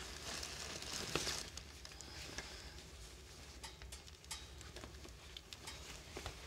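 Wood fire crackling faintly in a closed wood stove, with scattered small pops; a cotton-polyester shirt rustles as it is handled in the first second or so.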